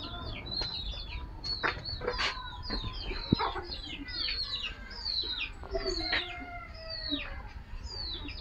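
Birds peeping rapidly, many short high calls overlapping, each sliding down in pitch, several a second, with a few faint clicks among them.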